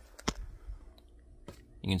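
Handling noise: a couple of light clicks, one just after the start and one about a second and a half in, over a low rumble, as a hand works in among the ATV's plastic front bodywork. A man's voice starts at the very end.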